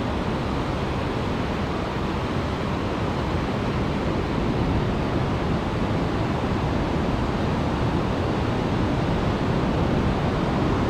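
Ocean surf breaking and washing up the beach, a steady continuous rush, with wind rumbling on the microphone.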